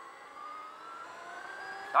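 Electric motorcycle's motor whine, rising steadily in pitch as the bike accelerates.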